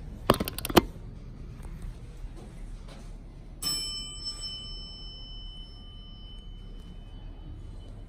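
A few sharp clicks as the elevator's down call button is pressed, then, about three and a half seconds in, a single elevator arrival chime that rings with several bright tones and fades away over a few seconds.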